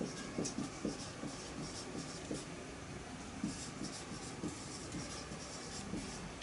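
Marker pen writing on a white board: a run of short, faint scratching strokes as words are written.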